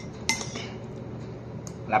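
A metal spoon clinks sharply once against a ceramic bowl while scooping up noodles, over a steady low hum.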